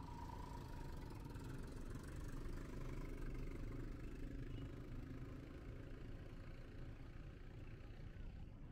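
Road traffic: car and motor-rickshaw engines running steadily as vehicles pass through a roundabout.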